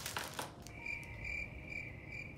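A steady, high-pitched chirping trill that pulses about twice a second, starting under a second in. A few soft clicks of box or packaging being handled come just before it.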